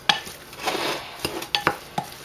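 Wooden spoon stirring crumbled, seasoned tofu in a glass bowl: a scraping, squishing mix broken by several sharp knocks of the spoon against the glass.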